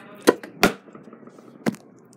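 A smartphone dropped and knocking against a hard desk: three sharp, loud knocks, two in quick succession and a third about a second later.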